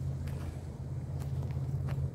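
Aprilia RSV4 1100 Factory's V4 engine with an Arrow exhaust idling with a steady low drone. Three light footsteps crunch on dry dirt, near the start, in the middle and near the end.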